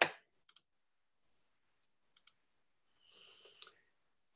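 A few faint, isolated clicks from a computer being operated, about half a second in and again around two seconds. Near the end there is a brief faint rustle that ends in another click.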